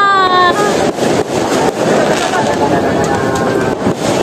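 Dense crowd talking and calling out, with fireworks popping overhead in repeated sharp cracks. In the first half-second a loud high toot glides down in pitch and ends.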